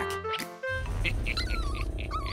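Background music with a small dog whining in short, wavering calls in the second half.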